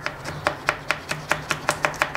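Knife tip stabbing down through the core of an apple slice onto a plastic cutting board, cutting out the seeds: a quick, even run of sharp taps, about five a second.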